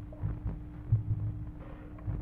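A steady low hum in a 1945 archival courtroom recording, with a few dull low thumps, the strongest about a second in.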